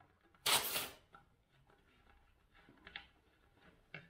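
A short hiss of air, about half a second, escaping from a bicycle tyre valve as the electric pump's hose is unscrewed from it, costing the tyre about 2 psi.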